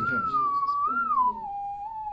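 Pure electronic tone from the loudspeaker driving a Rubens' tube (dancing-flame tube). Its pitch glides downward as the frequency knob is turned, rises briefly about a second in, then holds steady at a lower note from about halfway through. That held note sets up standing waves in the flame row.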